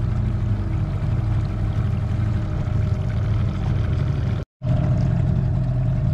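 Small outboard motor on an aluminium dinghy running steadily at trolling speed, a low even hum. The sound drops out for a split second about four and a half seconds in, then the motor hum carries on.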